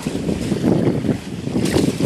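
Wind buffeting the microphone in uneven gusts, a loud low rumble, with small waves lapping at the shore underneath.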